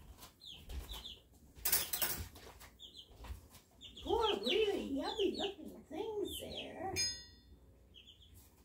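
Small pet birds chirping, short high chirps repeated throughout, with a brief rustling noise about two seconds in.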